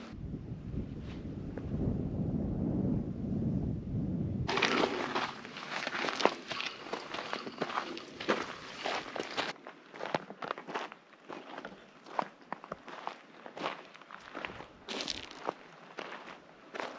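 Footsteps of hikers on a dirt trail through brush: irregular scuffs and clicks. This follows a few seconds of low rumble at the start.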